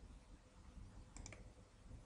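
Computer mouse clicked a few times in quick succession about a second in, over near silence.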